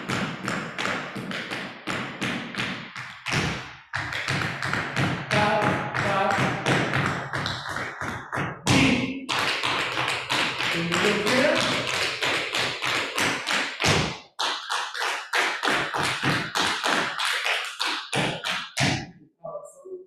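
Tap shoes striking a hard floor in fast, continuous strings of taps from several dancers at once. There is a short break in the tapping about two-thirds of the way through, and it stops just before the end.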